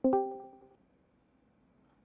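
Discord's call-join chime: a quick pair of bright electronic notes that ring out and fade within about a second, confirming the call has connected.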